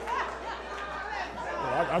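Indistinct chatter from several people in a congregation, with one voice starting to speak near the end.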